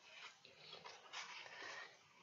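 Near silence: room tone with a few faint, soft noises.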